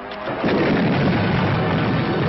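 Cartoon dynamite explosion sound effect, set off by a plunger detonator: a loud, sustained blast that cuts in about half a second in, over the tail of orchestral music.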